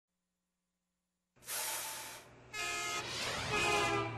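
TV news segment intro sting. After about a second and a half of silence comes a whoosh, then held, horn-like synthesized chords that change pitch twice.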